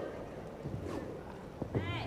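Wushu staff routine on a carpeted competition floor: soft footfalls and swishes of the wooden staff, with a short rising-and-falling squeak near the end.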